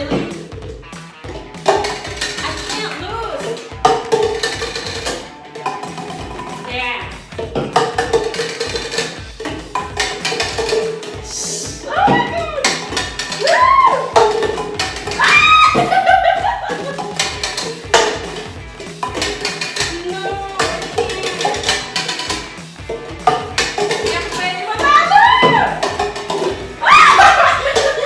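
Red plastic cups being flipped and knocking on a wooden tabletop in quick, irregular taps, over background music, with excited shouts and squeals from the players.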